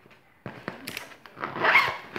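Fabric makeup bag with zippered mesh pockets being handled: a few light clicks and rustles, then a short zipper pull about a second and a half in, the loudest sound.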